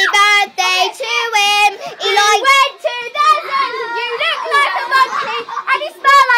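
A child singing in a high voice: a string of short held notes at changing pitches.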